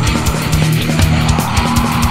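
Melodic death metal: heavily distorted electric guitars and bass over a fast, steady drum beat.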